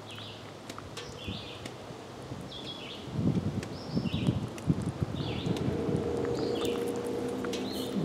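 A bird sings short, repeated chirping phrases about once a second in the background. About three seconds in, low rustling and soft thumps of handling and clothing take over for a couple of seconds. After that a faint steady hum comes in.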